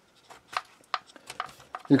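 Light, irregular clicks and knocks of wooden model parts being handled: a laser-cut wooden mechanical ship model being moved and turned in the hands, about eight or nine small taps over a second and a half.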